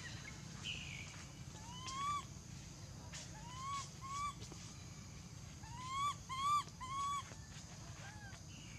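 Infant long-tailed macaque giving short rising coo calls, six in all: one, then a pair, then three in quick succession near the end.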